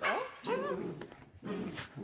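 Young doodle puppies whining and yipping, a few short cries that rise and fall in pitch.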